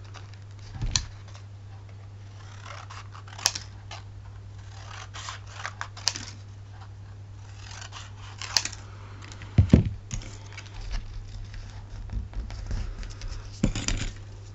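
Scissors snipping through thin black cardstock in short irregular cuts, with paper rustling and a thud on the table about two-thirds in. A steady low hum runs underneath.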